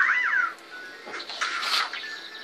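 A short high cry that rises and falls in pitch, like a meow, at the start, then paper rustling about one and a half seconds in as sheet-music pages are flipped.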